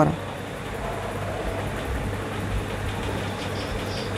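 Steady background noise with a low hum, no distinct events.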